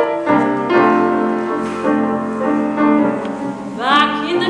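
Grand piano playing the introduction to a song, a series of struck chords. A soprano comes in singing with vibrato near the end.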